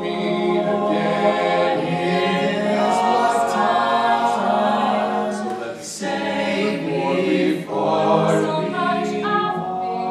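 Mixed-voice a cappella group of men and women singing in close harmony, voices only with no instruments. There is a brief dip in loudness about seven and a half seconds in.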